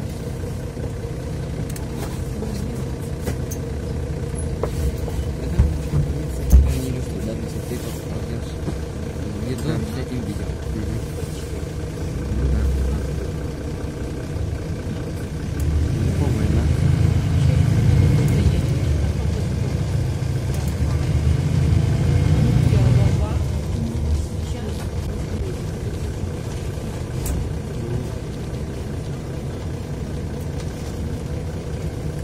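Mercedes-Benz O530 Citaro city bus heard from inside the cabin while under way: a steady diesel engine and road rumble, with a couple of knocks about six seconds in. From about halfway through, the engine grows louder for several seconds as the bus pulls, then eases off again.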